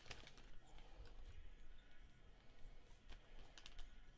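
Near silence: low room noise with a few faint clicks about three and a half seconds in.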